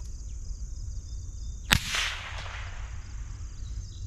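A single 5.56 rifle shot from a Colt LE6940 upper on a Colt 901 lower converted to take it, about two seconds in, with a short echo trailing off.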